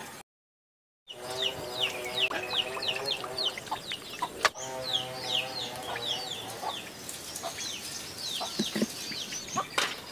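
Chickens calling: a rapid run of short, high, falling chirps with lower clucking calls among them, starting after about a second of silence.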